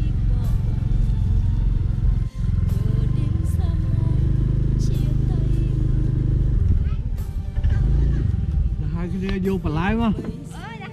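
Motorbike engine running at low speed along a dirt track, with music playing over it and a voice rising and falling near the end.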